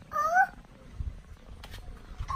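A young girl's short, high-pitched vocal squeal, rising in pitch, lasting about half a second at the start.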